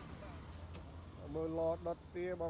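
A steady low rumble with a single faint click, then a person's voice starting a little past halfway and running almost to the end.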